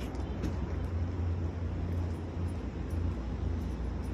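Low, steady rumble of outdoor street ambience picked up on a phone microphone while walking, with a few faint ticks.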